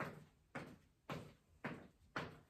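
Footsteps of brisk marching in place on a rubber gym floor: four even thuds, about two a second, each with a short ringing tail.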